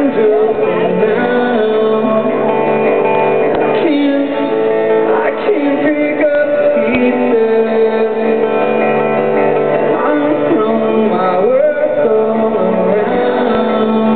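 Live solo acoustic performance: an acoustic guitar strummed steadily, with a male voice singing over it.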